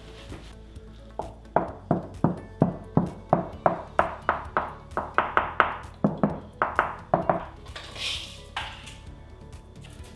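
Knuckles knocking along a hollow stud wall, a quick even run of about four knocks a second for some six seconds, listening for the change in sound where a timber stud sits behind the wall.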